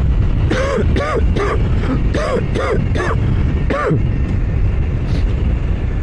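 Riding noise of a Royal Enfield Super Meteor 650 at highway speed: a steady low rush of wind and road noise on the microphone. Over it, several short bursts of the rider laughing in the first four seconds.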